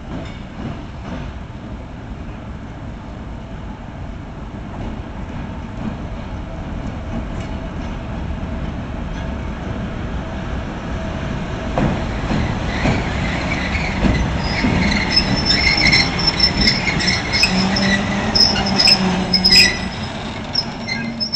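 PKP SM48 (Soviet-built TEM2) diesel shunting locomotive running light, its engine growing steadily louder as it approaches and passes close by. In the second half the wheels knock and squeal on the rails.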